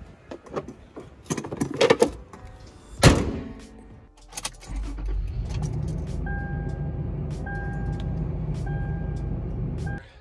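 Clicks and knocks of hand work on a Toyota 4Runner, with one loud sharp bang about three seconds in. After about four seconds the truck's engine is running with a steady low hum, and a dashboard warning chime beeps about once a second over it.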